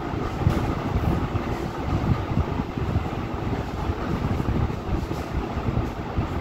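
Steady low rumbling background noise with a fainter hiss above it, like a vehicle or machinery running nearby.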